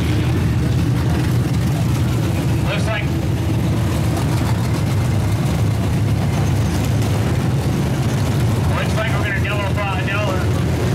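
Several dirt-track modified race cars running their V8 engines hard together through a turn, a steady, loud, low engine drone.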